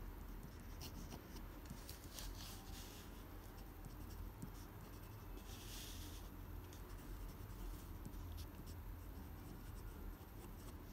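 Pen nib scratching across paper as cursive words are written: many short strokes and ticks, with a longer scratchy stroke about five and a half seconds in, over a faint low hum.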